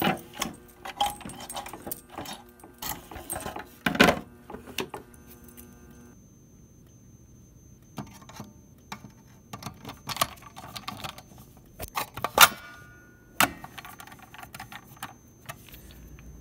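Keys jangling and clicking against a clear plastic pull-station cover as it is unlocked, then a reset key scraping and clicking in the top lock of a Notifier fire alarm pull station to reset it. Sharp loud clicks come about four seconds in and again about twelve and thirteen seconds in, with a quiet stretch between six and eight seconds.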